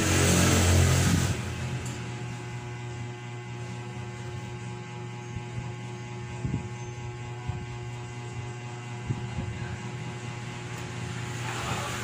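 A loud rustle of handling noise for about the first second, then a steady electrical mains hum with a few faint clicks.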